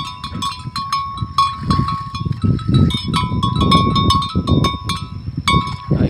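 A bell clanking irregularly, several strikes a second, over low crunching as a water buffalo tears and chews grass.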